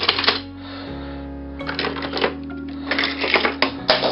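Die-cast metal toy cars clicking and clattering against one another as they are handled and set down on a boxful of others, in three short spells, over steady background music.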